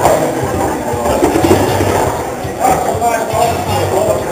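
Indistinct chatter of several people talking at once, with music playing low underneath.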